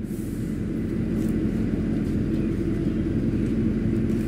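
Steady low rumble of outdoor background noise picked up by the camcorder microphone, with no voices.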